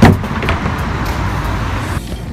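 A loud hollow thud on a plastic wheelie bin, then a smaller knock about half a second later, over steady street traffic noise.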